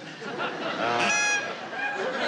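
Duck call blown once: a single short honking quack about a second in.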